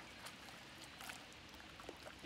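Faint water splashing and lapping from a swimmer kicking in a lake while holding a lifebuoy ring, with a few soft splash ticks over a quiet outdoor background.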